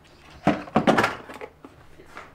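Hard knocks and clatters of the Dyson hair dryer and its plastic attachments being picked up and set down on a table: one knock about a quarter of the way in, then a quick cluster around the middle.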